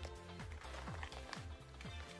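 Background music with a steady beat of low bass hits that fall in pitch, about three a second.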